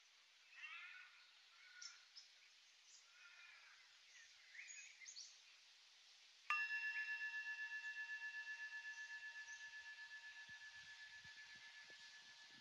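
Faint bird chirps, then a bell struck once, about six and a half seconds in. It rings with several clear tones together and fades slowly with a fast, regular wavering. It marks the end of the rest before the next posture.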